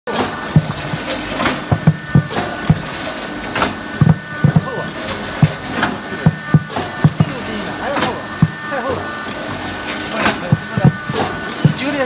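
Rotary compressed-biscuit press running: a steady machine hum broken by repeated sharp knocks, roughly two a second, from the pressing and ejecting cycle as biscuit blocks are pushed out onto the steel chute.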